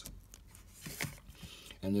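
Faint handling noise: a few light clicks and rustles as the plastic model part is moved about, with no drill running.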